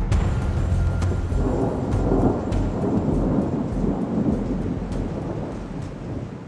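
Thunderstorm sound: deep rolling thunder rumble with rain noise, swelling after about a second and a half and fading toward the end.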